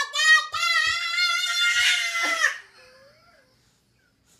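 A toddler shouting a long, high-pitched "ohhh", held for about two seconds after a few short calls, then falling quiet.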